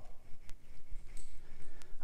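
A spoon stirring liquor punch in a ceramic bowl: quiet swishing with two light clinks against the bowl, one about half a second in and one near the end.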